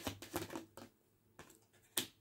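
A tarot deck being shuffled by hand: a quick run of soft card flicks through about the first second, then quiet, then one sharp tap near the end as a card is put down on the table.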